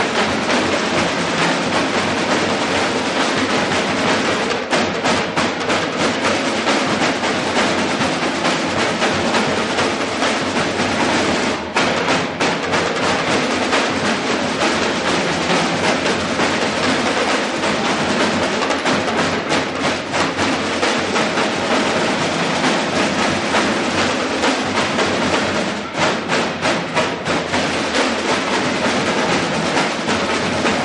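A school drumline of marching snare drums playing a fast, continuous cadence of dense, rapid stick strokes, with brief breaks around a third of the way in and again near the end.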